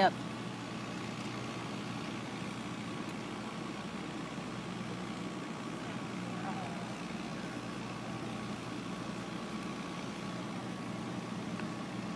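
Steady low hum of idling satellite news trucks, running evenly with no changes.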